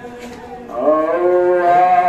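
A man chanting a nauha, a Muharram lament, into a microphone. After a quieter moment he starts a long, held sung note about three-quarters of a second in, which bends slowly in pitch.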